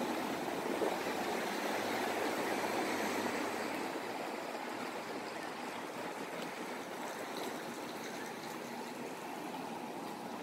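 Steady rush of road traffic, with cars and tyres passing on the street close by. It is louder in the first few seconds and then eases off slowly.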